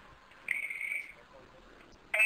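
A single short, steady high-pitched tone lasting about half a second, against a quiet background.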